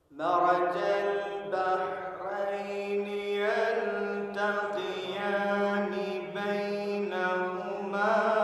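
A man's voice reciting the Quran in the melodic tajweed style, with long held notes and gliding pitch, heard through a microphone. It sets in suddenly just after a silence and carries on with only brief breaks between phrases.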